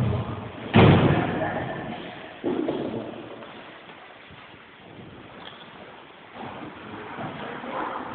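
A loud thud of a body thrown onto a judo mat about a second in, echoing afterward, then a second, smaller thud about two and a half seconds in.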